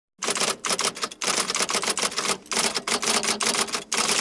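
Typewriter sound effect: a fast run of clattering keystrokes with two short pauses, about a second in and about two and a half seconds in, stopping abruptly at the end.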